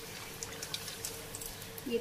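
A sweet poori of jaggery dough deep-frying in refined oil kept on a low flame: a quiet, steady sizzle with scattered small crackles, over a faint steady hum.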